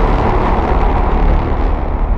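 Cinematic logo-reveal sound effect: the low rumbling tail of a deep boom, its upper range slowly fading.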